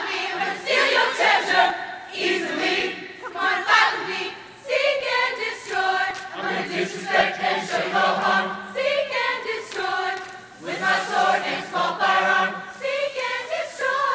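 A large choir of male and female voices singing a cappella, in phrases with short breaks between them.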